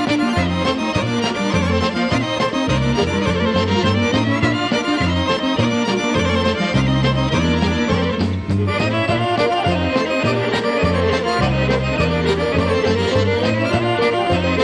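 Serbian folk ensemble playing an instrumental passage without singing, with the accordion leading the melody over a steady bass beat.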